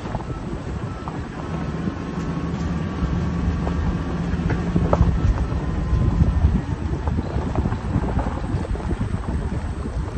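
Overland vehicle driving slowly on a gravel road: a low engine drone, tyre noise with small clicks from the gravel, and wind buffeting the microphone.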